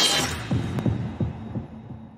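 Logo-animation sound design: a loud whoosh that crests at the start, then four deep pulsing bass hits about a third of a second apart, dying away.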